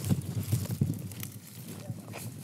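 Irregular rustling and scuffing of leaves, soil and clothing as a garlic plant is worked loose and pulled from the ground by hand, with a few small clicks.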